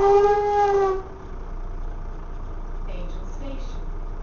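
A vehicle horn holding one steady note, which cuts off about a second in, heard from inside a double-decker bus. The bus's steady running noise follows.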